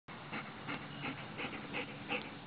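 A dog panting close by with its mouth open and tongue out, a quick even rhythm of about three breaths a second.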